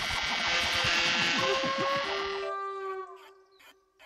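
Cartoon sound effect of a termite gnawing through a tree trunk: a loud, dense, rapid chattering that cuts off suddenly about two and a half seconds in. Held music notes and a falling glide continue after it, with a few light ticks near the end.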